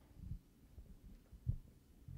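A few faint, dull low thumps of people moving about, one about a quarter second in and a stronger one about one and a half seconds in.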